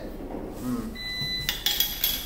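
A short steady electronic beep of about half a second, about a second in, followed by crinkling plastic wrap and clicks as packaging is handled.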